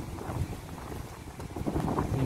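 Wind buffeting the microphone: a low, steady rumble with no distinct events.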